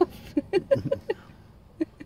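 A person laughing in short breathy bursts for about a second, then a quieter stretch broken by one sharp click near the end.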